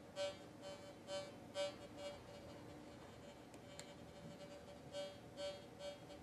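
Nokta Fors Core metal detector's audio signal: short buzzy beeps as a rock is passed near the search coil, five in quick succession in the first two seconds and three more near the end, over a faint steady tone.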